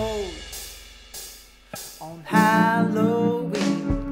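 Band music from a home multitrack recording, with electric guitar, drums and singing. A phrase ends on a falling note at the start, the music thins out and quietens for a moment, then a long held note comes in loudly a little past halfway.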